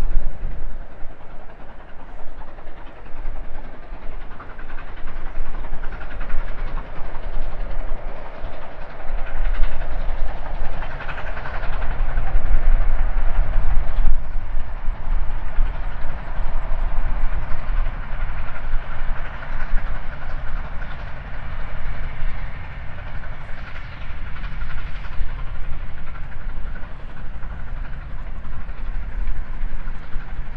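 Steam-hauled passenger train going past, its locomotive working hard with wheel noise on the rails. It grows louder toward the middle and fades as it moves away.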